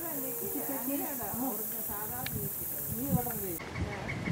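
Indistinct voices of people talking, over a steady high hiss that cuts off abruptly about three and a half seconds in.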